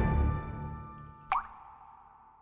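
Background music fading out, then, about two-thirds of the way in, a single water-drop plop: a quick rising tone followed by a short ringing tone that dies away.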